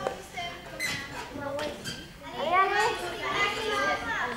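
Children's voices talking and calling over one another, with a louder burst of several voices about two and a half seconds in.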